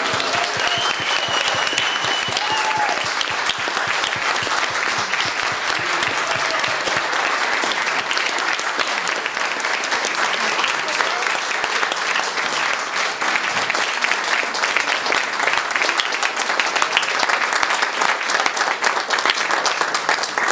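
Audience applauding steadily, a dense patter of many hands clapping, with voices mixed in.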